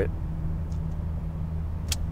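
Steady low hum inside a Mercedes CL500's cabin during a pause in talk, with one short click near the end.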